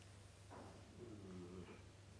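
Near silence, broken about halfway through by a faint, low hum from a man's voice lasting under a second.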